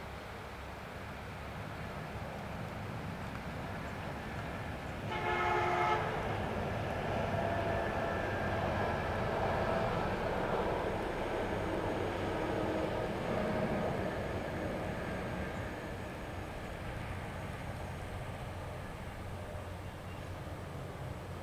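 A vehicle horn sounds once for about a second, over the rumbling noise of a passing vehicle that swells and then fades over some ten seconds.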